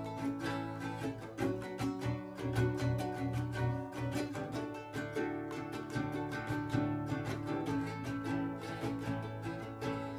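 Ukulele and acoustic guitar strumming chords together: the instrumental introduction of a song, with no singing yet.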